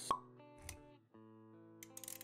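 Motion-graphics intro sound effects over background music with sustained notes: a sharp pop at the very start, then a softer low thump a little later. The music drops out briefly about halfway through.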